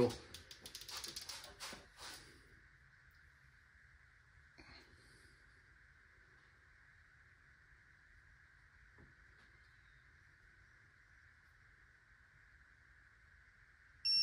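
Faint clicks of an electronic torque wrench and socket being fitted to an LS cylinder-head bolt and the wrench being worked during the first two seconds or so. Then near silence with a faint steady hiss while the bolt is slowly turned to its final angle, with a single light knock about four and a half seconds in.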